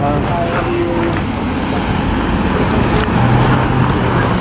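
Road traffic rumbling past, with voices chattering in the background; a steady low engine hum comes in near the end.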